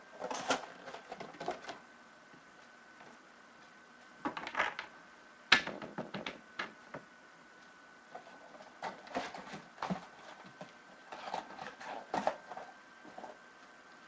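Trading cards and their packaging being handled on a table: scattered clicks, taps and light rustles in short clusters, with a faint steady high-pitched tone underneath.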